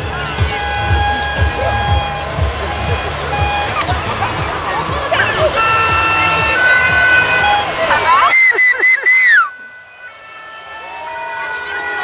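Publicity caravan floats passing: music and voices from the floats' loudspeakers over a low engine rumble, with spectators' shouts. Near the end comes a quick run of short high tones ending in a falling whistle, then the sound drops suddenly to much quieter.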